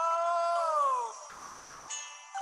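Playback of a pop song: a male singer holds one long note that slides down in pitch about a second in, then the music drops quieter for a moment.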